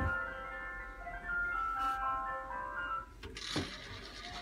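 A simple electronic tune of short beeping notes, like an appliance or toy jingle, ending about three seconds in, followed by a brief knock.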